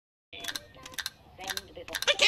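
A television's channels being flipped with a remote about twice a second, starting a moment in. Each change brings a sharp click and a brief snatch of a different programme's sound.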